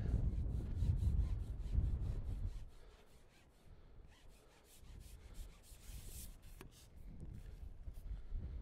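Wind buffeting the microphone: a low rumble, heaviest for the first two or three seconds and then dying down, with a few faint clicks.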